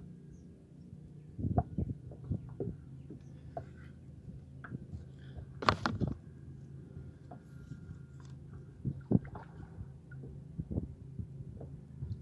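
Irregular knocks and thumps on a kayak hull from struggling to land a large fish by hand, over a steady low hum. The loudest knock comes about six seconds in.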